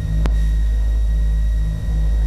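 Low, steady drone of the Beechcraft Baron 58TC's twin turbocharged six-cylinder piston engines at low power, with a single faint click about a quarter second in.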